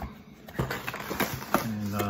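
Frozen-food packaging being opened and handled: a few sharp crinkles and clicks of the wrapping. A man's voice is heard briefly near the end.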